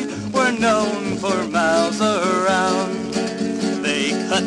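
Country-style song played from a 1966 45 rpm single: acoustic guitar accompaniment under a melody line that slides and wavers between notes.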